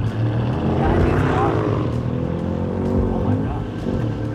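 Cadillac V-Series Blackwing sedan's engine pulling hard at speed on a race track, its pitch climbing through the first second or so and then holding steady.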